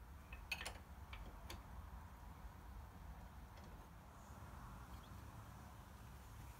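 Near silence: quiet room tone with a few faint clicks and taps from parts being handled, most of them in the first two seconds.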